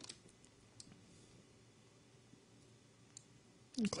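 A few faint, scattered computer mouse clicks over quiet room tone: one near the start, one just before a second in, and one a little after three seconds.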